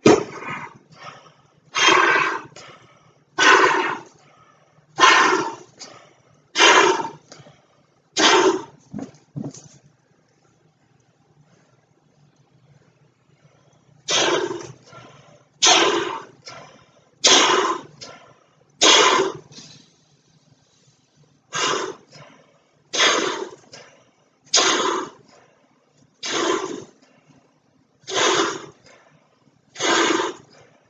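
A weather balloon being blown up by mouth: a strong, breathy puff of air about every one and a half seconds. The breaths stop for about four seconds in the middle, then resume at the same pace.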